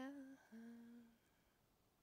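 A woman's unaccompanied voice holding a long sung note that ends within the first half second, followed by a second, shorter note slightly lower in pitch.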